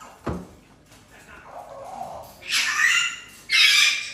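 A single thump about a quarter second in, then a parrot gives two loud, harsh squawks near the end.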